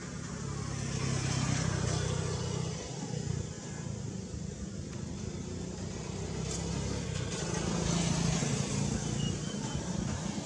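A motor vehicle engine humming, louder about a second in and again around eight seconds.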